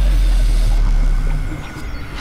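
Transition sound effect: a deep bass rumble with a glitchy noise layer, fading about one and a half seconds in.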